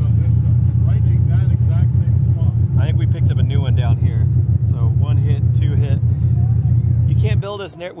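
A vehicle engine idling close by: a loud, steady low rumble that stops abruptly near the end.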